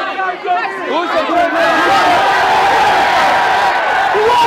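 Large crowd shouting and yelling excitedly, a few separate shouts at first, swelling into a sustained mass yell about two seconds in.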